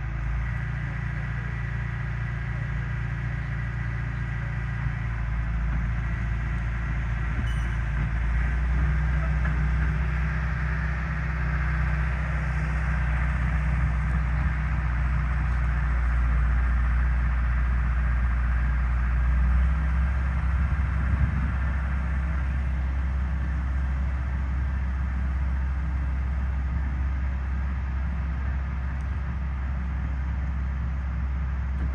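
Engine of heavy earth-moving machinery running steadily nearby, a low rumble whose pitch shifts about two-thirds of the way through as the load changes.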